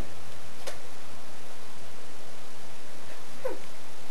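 Domestic cat giving a short meow that falls in pitch about three and a half seconds in, over a faint steady hum.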